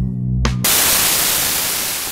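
Music with bass and plucked guitar notes breaks off abruptly about two-thirds of a second in and gives way to loud, even static hiss that slowly fades.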